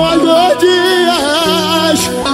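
Live pagode baiano (pagodão) band music with a lead vocal holding long notes with vibrato over a steady bass note.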